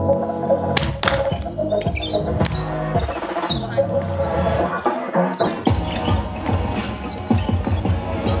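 Music with a beat plays throughout, the kind a dance group rehearses its choreography to.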